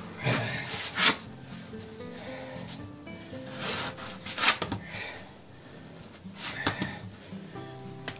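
A wooden stick rubbing and scraping against the inside of an old brick chimney flue in several irregular strokes, as it rams glass wool down the flue.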